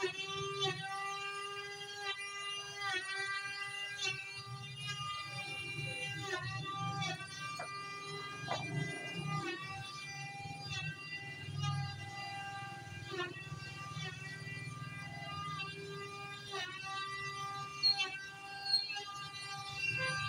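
Background music: a sustained melodic line whose notes slide and change every second or two over a low hum.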